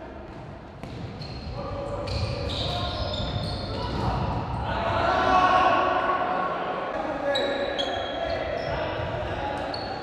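Live sound of a futsal game in a sports hall: players shouting and calling to each other over scattered thuds of the ball being kicked and bouncing on the court.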